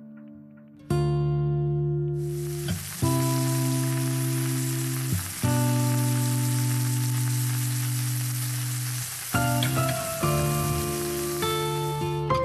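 A fried breakfast of sausages, black pudding, eggs, tomatoes and mushrooms sizzling in a frying pan, a steady hiss that starts about two seconds in and stops near the end. Background music of slow held chords plays under it.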